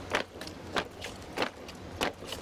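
A column of honour-guard soldiers marching in step, their boots striking the pavement together in a steady cadence, about three footfalls in two seconds.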